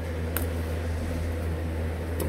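A steady low hum throughout, with one short sharp click of cardboard packaging being handled about half a second in.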